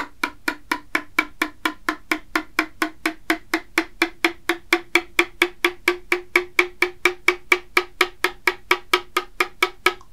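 A metal spoon tapping the bottom of a ceramic mug of freshly stirred hot chocolate, about four to five taps a second, each tap ringing with a hollow note. This is the hot chocolate effect: bubbles stirred into the drink lower the mug's note, which then keeps rising as they clear.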